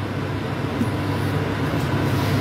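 A steady, low mechanical hum with no distinct events.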